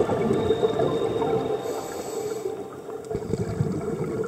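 Underwater recording of scuba divers' regulators, with exhaled bubbles gurgling and crackling.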